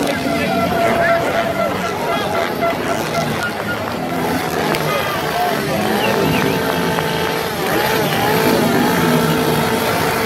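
Motocross bikes revving on a track, their engine notes rising and falling, heard from among a crowd of spectators talking.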